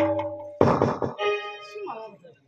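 Live folk music with drums tails off, then a single heavy drum stroke lands about half a second in. A held note follows, and a voice comes in near the end.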